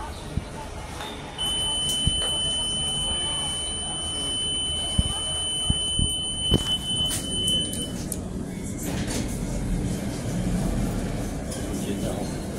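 Elevator car's electronic buzzer sounding one steady, high-pitched tone for about six seconds, starting a second or so in, over a constant background din and a few light clicks.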